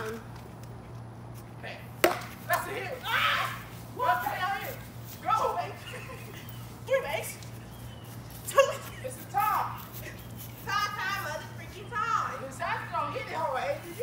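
A green plastic bat strikes a pitched ball with one sharp crack about two seconds in, followed by voices calling out excitedly through the rest of the play.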